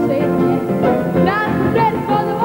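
A woman singing a song live, with a band accompaniment of keyboard and guitar.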